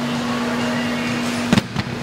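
Heavy dumbbells dropped onto the gym floor from an incline bench press: two heavy thuds about a second and a half in, a quarter second apart, over a steady background hum. It is an unsafe way to put dumbbells down.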